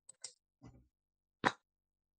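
Computer mouse clicks: a few short, sharp clicks, the loudest about one and a half seconds in.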